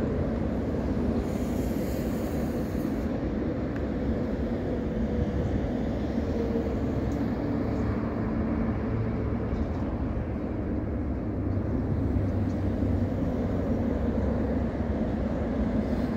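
Steady traffic on an elevated ring road, with lorries passing: a continuous low rumble of engines and tyres that does not let up.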